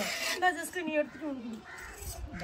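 Crows cawing in several short calls, mixed with people's voices.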